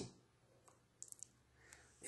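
Near silence with a few faint clicks, one just over half a second in and a small quick cluster about a second in.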